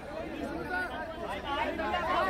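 Crowd of fans chattering, many overlapping voices with no single voice standing out.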